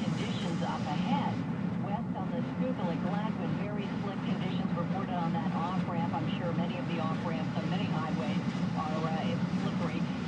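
Steady engine and tyre drone inside a Jeep Liberty's cabin on a snow-covered road, with a voice talking low underneath.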